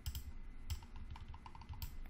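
Computer keyboard being typed on, with a few sharp key or mouse clicks, the loudest near the end.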